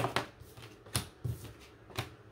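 A tarot deck being shuffled and handled by hand, with crisp card snaps and flicks. The loudest snap comes right at the start, followed by softer ones every third of a second or so, then quieter handling.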